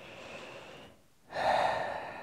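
A man's breathing close to the microphone: a soft intake of breath, then after a short pause a louder, breathy exhale about a second and a quarter in.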